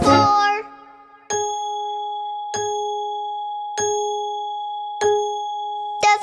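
A clock bell striking four times, evenly spaced about a second and a quarter apart, each strike ringing on until the next. A sung line of children's music fades out just before the first strike.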